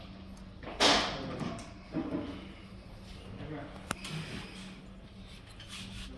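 Plastic RJ45 keystone jack being pressed shut over an Ethernet cable by hand: a loud snap about a second in, then handling rustle and a sharp, quieter click about four seconds in.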